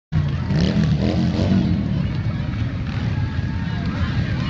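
Cruiser motorcycles riding slowly past, their engines running low and steady, with the chatter of a crowd of onlookers.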